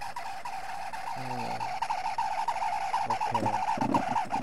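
A small electric motor starts and runs at a steady high pitch. From about two seconds in, a fast, uneven chatter rides on it.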